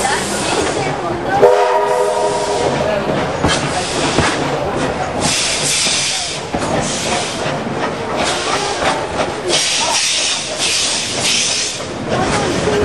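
Moving narrow-gauge train heard from an open carriage window, with continuous running noise from the wheels on the track. A whistle sounds a chord of several notes for about a second and a half shortly after the start. Two long bursts of hissing come later.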